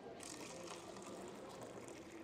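Warm apple cider running from the spigot of a stainless steel beverage urn into a paper cup: a faint, steady pouring stream filling the cup.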